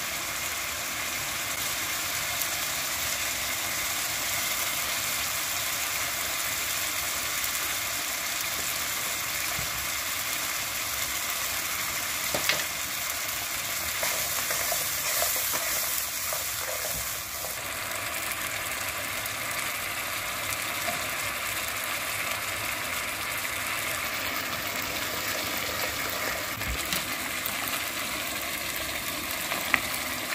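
Halwa sizzling and bubbling steadily in a hot aluminium karahi while it is stirred with a spatula, with a couple of brief clicks.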